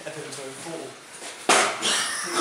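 Faint voices talking, then a sudden loud noise about one and a half seconds in that lasts about half a second.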